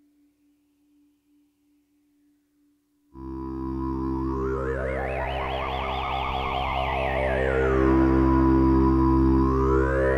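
Eurorack modular synthesizer patch starting suddenly about three seconds in, after near silence: a sustained low drone under a higher tone that slowly rises and falls with a fast wobble, climbing again near the end.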